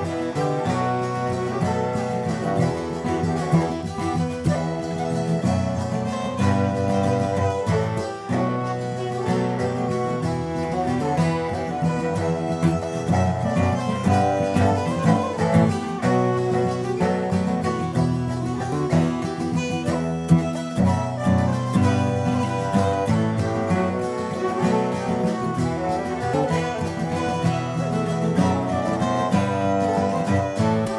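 Acoustic folk ensemble playing a waltz: a bowed nyckelharpa melody with acoustic guitar and cello accompaniment.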